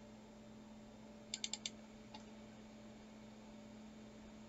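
Computer mouse clicked four times in quick succession, then once more a moment later, over a faint steady hum.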